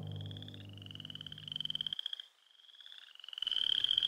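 A chorus of high, rapidly pulsing frog-like trills over a low sustained hum. The hum stops about two seconds in, there is a short silent gap, and the trilling comes back louder.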